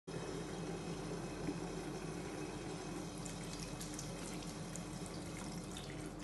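Water running steadily from a bathroom mixer tap into a ceramic sink basin, with small hands rubbing under the stream. Light splashes can be heard from about halfway through.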